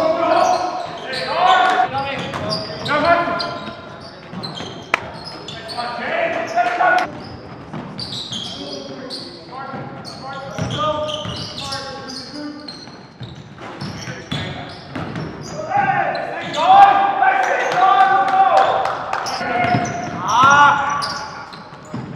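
Live basketball game sounds in a gymnasium: the ball bouncing on the hardwood court, with short sharp knocks and players calling out indistinctly, all echoing in the large hall.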